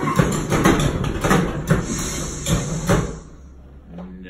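Staged rattling and clattering show effect with a low rumble: the shop's wand-box shelves and ladder shaking when the wrong wand is tried. It stops abruptly about three seconds in.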